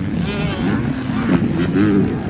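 Motocross dirt bike engines revving on the track, their pitch climbing and falling repeatedly.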